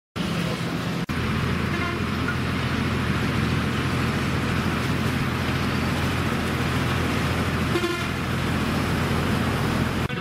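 Fire engine's diesel engine running steadily at close range, a loud even drone with a low hum. The sound drops out briefly about a second in.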